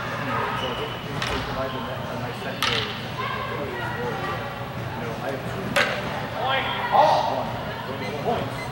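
Practice longswords striking in a fencing bout: three sharp knocks, about a second and a half in, near the three-second mark and just before six seconds. Voices chatter underneath, with a louder call near the end.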